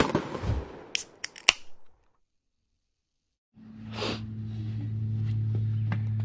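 Logo intro sound effects: a short noisy burst with a few sharp snaps in the first two seconds, then a moment of dead silence. A steady low hum comes in about three and a half seconds in and carries on.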